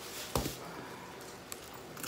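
A single sharp knock about a third of a second in as a chef's knife is lifted off a wooden cutting board, followed by a couple of faint clicks.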